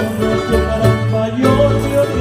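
Canarian folk polka played by a plucked-string ensemble of guitars and lute-type instruments, with a steady bass line under the melody.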